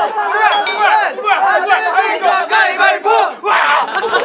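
A group of young men shouting over each other, loud and excited, with laughter mixed in.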